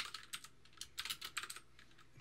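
Typing on a computer keyboard: a quick run of key clicks, busiest at the start and again around the middle, thinning out near the end.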